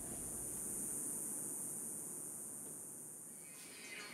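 Steady outdoor ambience: an even wash of distant background noise with a constant high hiss. It fades slightly near the end.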